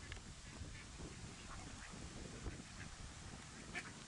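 Mallard ducklings and their mother calling: short high peeps scattered through, with one louder call near the end, over a steady low rumble.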